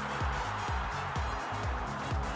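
Background music with a steady beat and held tones.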